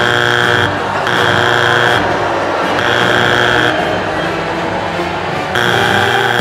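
Britain's Got Talent judges' X buzzer sounding four times, each a steady electronic buzz of just under a second with gaps of about a second between. One buzz for each judge, so all four X's are lit and the act is buzzed off.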